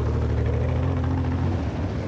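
Off-road race buggy's engine running steadily with a low drone, which drops away near the end.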